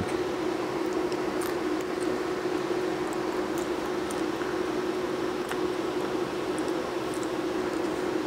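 A laser cutter running: a steady whirring fan noise with a constant low hum, and a few faint scattered ticks.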